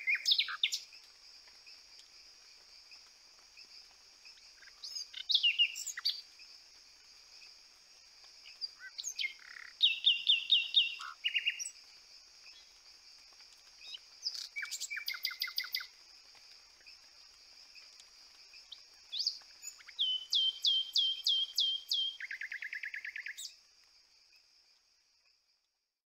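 Lawes's parotia calling: several short bursts of rapid, sharp repeated notes, the last a fast buzzy trill, over a steady high-pitched background drone.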